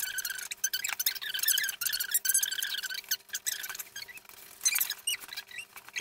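A voice sped up to a high, squeaky chipmunk pitch, as in fast-forwarded footage, broken by many quick clicks and rustles from handling packaging.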